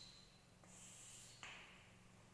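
Near silence: faint steady room hum, with two soft, brief noises, one about two-thirds of a second in and one about a second and a half in.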